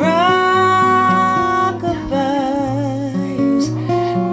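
A woman singing a lullaby to acoustic guitar: she holds one long note, then a shorter note with vibrato, while the guitar is strummed underneath.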